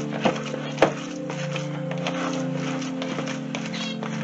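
Background music with sustained low notes, over which a pet Australian finch gives short, sharp calls like a small horn: two within the first second and another brief one near the end.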